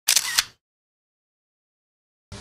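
Camera shutter sound effect: a quick, crisp double click at the very start, lasting about half a second.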